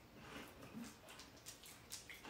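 Near silence, with a few faint crunching clicks of a crisp sugar-wafer stick being bitten and chewed.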